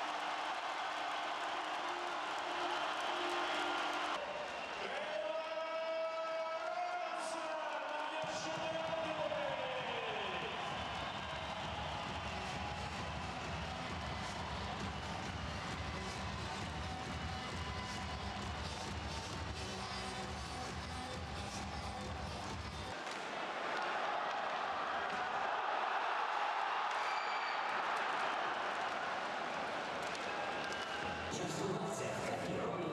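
Ice hockey arena crowd cheering after a goal. About five seconds in, a long horn blast sounds, falling in pitch as it dies away. Arena music with a steady bass beat follows for about fifteen seconds, then the crowd noise takes over again.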